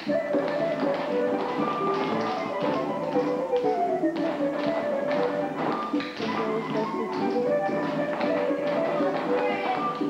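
Latin-flavoured dance music playing, with many quick taps of children's dance shoes striking a wooden floor over it.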